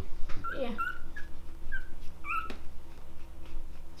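English bulldog whimpering: a run of about five short, high squeaks over the first two and a half seconds, with a sharp click about two and a half seconds in.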